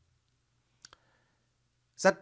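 Near silence: room tone in a pause, with two faint short clicks close together a little under a second in.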